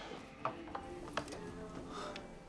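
Four light, sharp clicks spread over two seconds, with faint music underneath.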